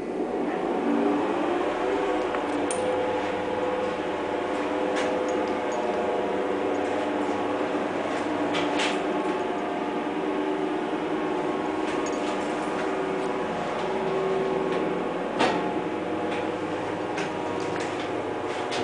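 Hütter freight elevator from 1951 travelling in its shaft: the drive running with a steady hum of several tones, with a few sharp clicks along the way, the loudest about fifteen seconds in.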